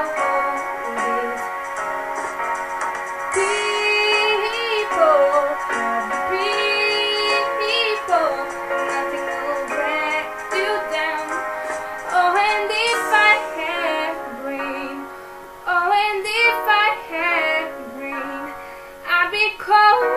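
A young woman singing over a sustained instrumental backing track.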